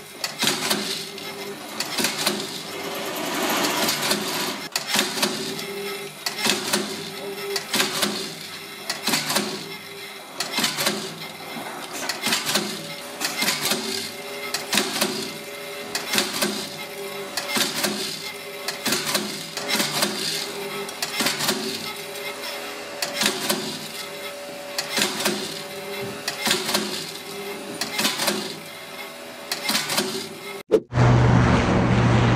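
Industrial shoemaking machine working on a leather sneaker upper: steady clacking strokes, about three every two seconds, over a constant hum.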